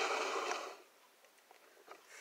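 A girl's breathy exhale trailing off the end of a spoken 'no', fading within the first second, followed by quiet with a few faint clicks.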